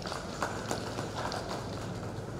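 Footsteps of hard shoes on a stage floor, about five or six uneven steps, as a man walks away from a lectern, over a steady low room hum.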